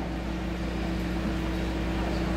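A steady low hum, with an even background noise under it.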